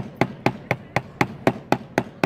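Small hammer tapping decorative upholstery nailheads down into a wooden board: sharp, evenly spaced strikes, about four a second.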